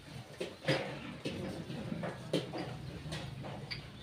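Metal serving utensils and stainless-steel bowls clinking as food is spooned into monks' alms bowls: a handful of scattered sharp clinks, one near the end ringing briefly.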